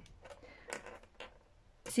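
A few faint clicks and light handling noise from a felt-tip marker and a paper pattern on a desk.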